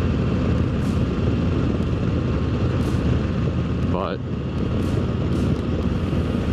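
Harley-Davidson 2024 Road Glide's Milwaukee-Eight 117 V-twin running steadily while the bike is ridden, with road and wind noise.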